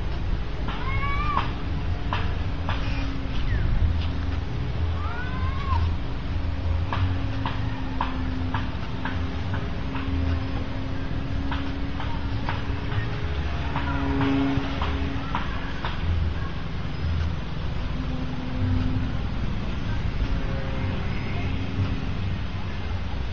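Radio-controlled model of an Etrich Taube droning overhead, its motor and propeller giving a steady hum that swells and fades as it flies, over a low rumble of wind on the microphone. Short rising-and-falling animal calls and sharp chirps come and go every few seconds.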